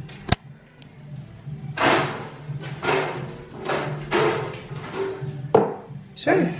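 Background music with a steady low drone and recurring swells, and one sharp knock a moment after it starts.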